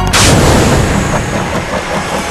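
A single loud boom about a tenth of a second in, decaying over the next two seconds into a noisy rumbling tail.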